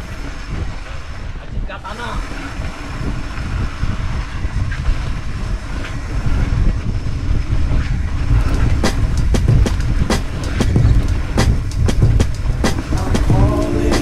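Mountain bike rolling down a dirt singletrack: a steady low rumble of tyres and wind buffeting the camera microphone, with the chain and frame rattling and clicking over bumps, the knocks growing busier and louder from about halfway.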